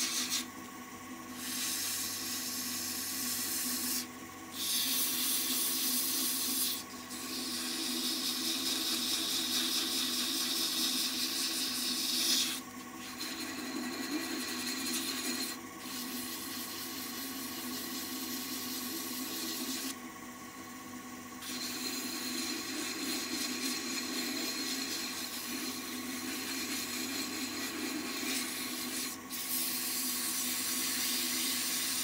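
Sandpaper held against a small maple spindle turning on a wood lathe: a steady rubbing hiss, broken by several short pauses, over the lathe's steady hum.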